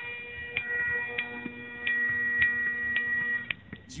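Bagpipes playing: a steady low drone under a held high chanter note, cut by short regular breaks about every half second. The playing stops near the end.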